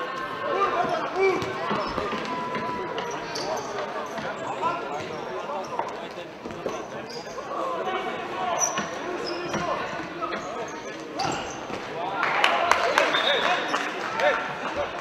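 Indoor futsal in a sports hall: the ball being kicked and bouncing on the hard floor, with players and spectators calling out, all echoing in the hall. Near the end the voices swell into a burst of shouting and cheering as a goal is scored.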